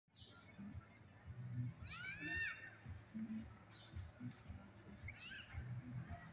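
Birds calling: a few short rising-then-falling calls and some higher chirps, over a faint low murmur of street voices.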